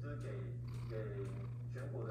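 Domestic cat purring steadily right up against the microphone.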